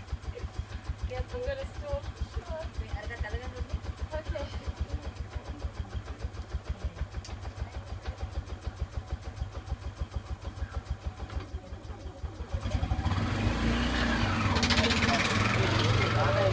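Tuk tuk's small single-cylinder engine idling with a steady low beat, then revving up sharply about three-quarters of the way in as the three-wheeler pulls away.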